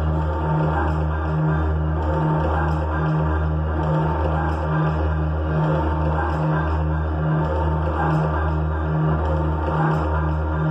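Live electronic music: a deep bass drone throbbing in even pulses a little under a second apart, with a quicker pulse above it at about two and a half a second, under a dense, noisy electronic texture.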